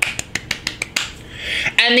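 Hands clapping quickly, about eight light, rapid claps in the first second, then dying away.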